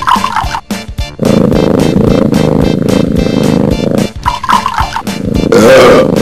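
Cartoon theme music with a steady beat. Near the end, a wavering, gliding sound rises over it.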